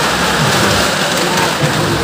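Cars driving at speed around the vertical wooden wall of a well-of-death, engines running hard and tyres rumbling on the planks in a loud, steady din.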